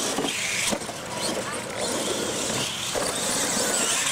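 Two radio-controlled monster trucks racing flat out across a dirt track: motors whining and tyres spraying dirt in a steady loud hiss, with a whine falling in pitch near the end.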